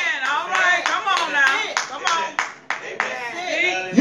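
Hand clapping, several claps a second at an uneven pace, with high voices calling out responses over it.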